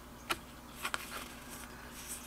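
Tarot cards being handled as one card is slid off the deck to reveal the next, giving three faint, short clicks in the first half.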